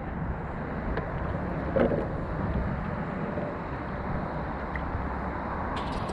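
Steady wind rushing over the camera microphone, with one brief short sound about two seconds in.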